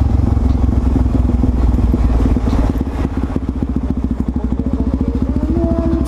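Suzuki DR-Z400SM supermoto's single-cylinder four-stroke engine heard from the rider's seat, running as the bike rolls along the street, then turning to an even, rapid pulsing from about two seconds in as the bike slows and pulls up to the curb.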